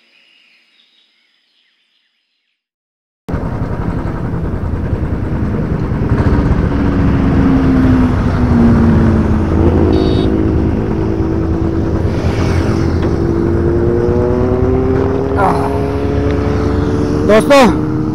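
After a few seconds of silence, a motorcycle engine starts sounding abruptly and runs steadily, its pitch sagging and rising slowly.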